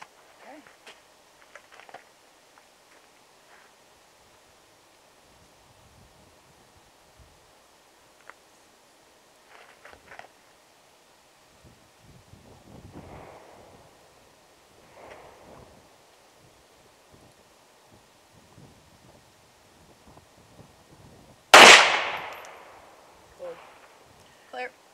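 A single .380 Auto pistol shot, fired into a ballistic gel block, about three-quarters of the way through: one sharp crack with a short ringing decay. Before it, only faint scattered handling sounds.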